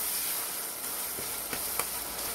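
Onions, green chillies and tomato sizzling in oil in a pressure cooker while a perforated metal spoon stirs them, with a few light clicks of the spoon against the pot in the second half.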